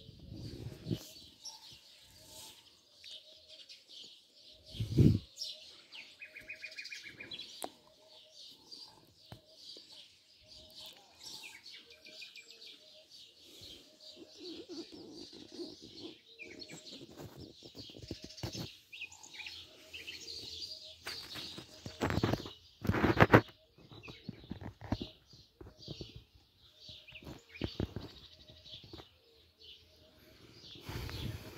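Birds chirping and calling throughout, with a short call repeated at a steady pace. A few low thumps on the microphone, about five seconds in and again around twenty-two to twenty-three seconds, are the loudest sounds.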